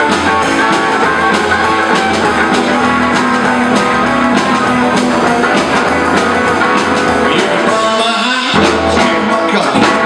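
Live rockabilly band playing: strummed acoustic guitars, electric guitar, slapped upright bass and a drum kit keeping a steady beat. The low end drops out briefly about eight seconds in before the band carries on.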